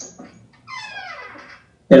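A dog whining once: a high cry that falls steadily in pitch over about a second, after a short click.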